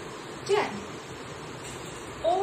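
A woman's voice gives one short sound that falls in pitch, about half a second in, over steady background hiss.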